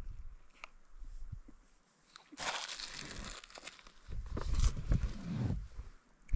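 Wrapper crinkling around a sausage and egg burrito as it is handled and eaten, with a few faint clicks at first and a louder rustle about two and a half seconds in. A low rumble, the loudest sound, follows from about four seconds to shortly before the end.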